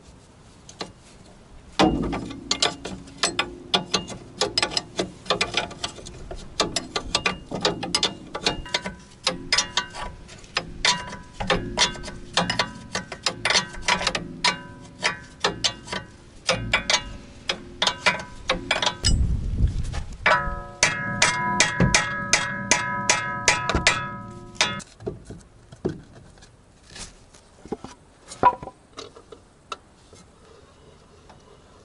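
A ratchet wrench clicking in long runs, with metal knocks from tools on the front suspension of a VAZ 2106 as its fasteners are undone to take the ball joints off. The clicking is fastest and most even about two-thirds of the way through, then gives way to a few scattered knocks.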